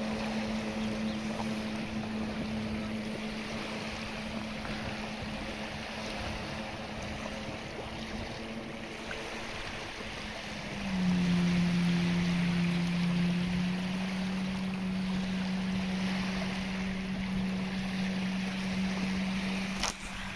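Jet ski engine running with a steady drone over wind and lapping water; about halfway through the drone drops in pitch and gets louder.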